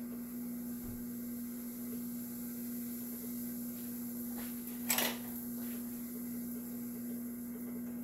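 Steady electric motor hum of a countertop ice cream maker churning, with one sharp knock about five seconds in.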